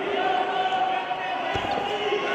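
A dull thud about one and a half seconds in as the wrestlers are taken down onto the foam wrestling mat, over shouting voices.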